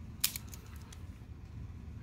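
A three-colour ballpoint pen clicking a few times in quick succession about a quarter second in, then faint rustling as the pen and paper are handled.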